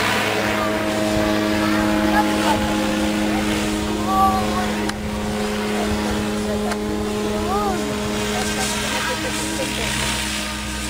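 Goblin 700 radio-controlled helicopter in flight: a steady hum from its rotors and drive, holding one pitch throughout.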